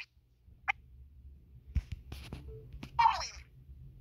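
A few light knocks and soft handling noise from plush toys being moved about, with one short vocal sound about three seconds in.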